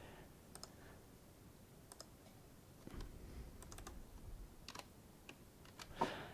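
Faint, scattered keystrokes and clicks on a computer keyboard, a few irregular taps every second or so.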